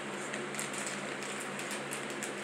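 Steady low background hiss with a faint hum, and a few faint small ticks and rustles.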